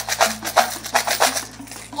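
A handful of quarters and other coins rattling in a clear plastic tub as it is shaken, a quick irregular run of clinking clicks, with a music bed underneath.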